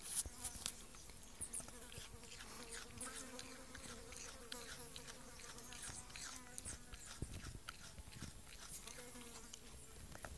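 A Tasmanian pademelon chewing a piece of apple: faint, quick crunching clicks, a few louder bites near the start. A flying insect buzzes close by for a few seconds in the middle and briefly again near the end.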